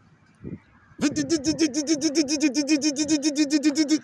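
A man's voice imitating a car engine cranking without starting: a rapid, steady chugging of about seven beats a second that starts about a second in and lasts some three seconds. It stands for a starter turning over an engine that has no fuel.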